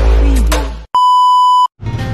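Bass-heavy intro music fading out, followed by a single steady electronic beep lasting under a second that cuts off abruptly.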